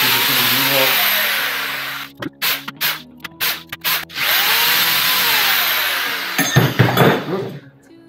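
A cordless drill running twice for about two seconds each, backing screws out of an electric mountain board's wheel hub; the motor's whine rises and falls in pitch on each run. Short clicks come between the runs, and a brief rattle near the end.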